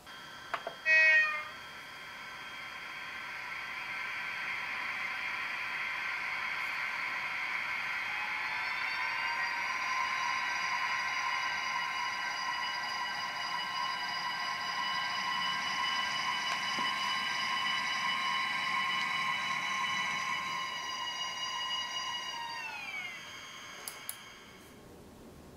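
Sound decoder of a TRIX model of the ČD class 380 (Škoda 109E) electric locomotive playing its traction whine as the model runs: several tones rise in pitch as it pulls away, hold steady, then fall away as it slows to a stop near the end. A short loud tonal sound comes about a second in.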